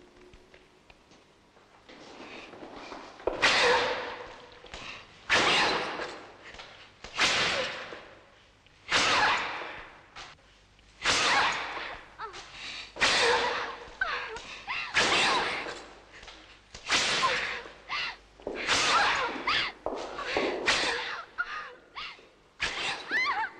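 A whip lashing about ten times, roughly one stroke every two seconds, each sharp stroke followed by a woman's cry that fades over about a second in a reverberant room.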